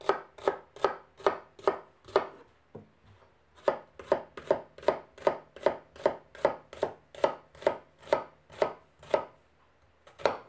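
A chef's knife slicing shallots on a plastic cutting board: steady knocks of the blade through the shallot onto the board, about two and a half a second. They pause briefly about two seconds in, then resume at the same pace.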